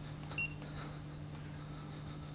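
A single short electronic beep about half a second in, over a steady low hum.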